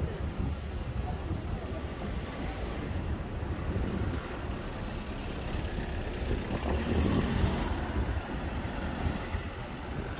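Vehicle passing close by on a narrow city street: engine and tyre noise swell to a peak about seven seconds in and then ease as it drives on ahead, over a steady low traffic rumble.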